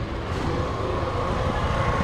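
A motor scooter's engine idling: a steady low rumble with a faint steady whine above it.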